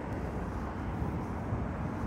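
Steady low outdoor background rumble with no distinct events.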